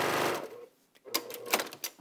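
Baby Lock Accomplish sewing machine running fast as it stitches a seam, stopping about half a second in. A few sharp clicks follow near the end.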